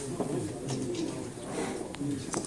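Indistinct low men's voices murmuring around the table, with a faint click near the end.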